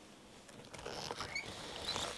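A page of a spiral-bound paper book being turned by hand: paper rustling and scraping that starts about a third of the way in, with a louder flap near the end as the page lands.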